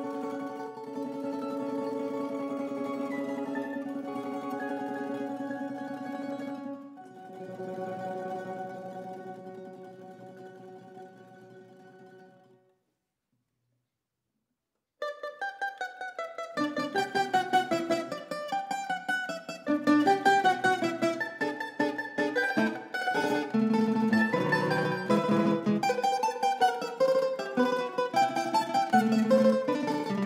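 Tambura quartet (bisernica, A-brač, E-brač and tambura cello) playing held chords that change about seven seconds in and fade away by about twelve seconds. After a couple of seconds of silence, a fast passage of quickly plucked notes begins and runs on.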